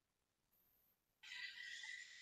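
Near silence during a pause on a video call, with a faint hiss coming in a little past halfway.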